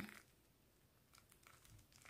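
Near silence: room tone, with a few faint ticks in the second half as a snakeskin-print zip wallet is handled.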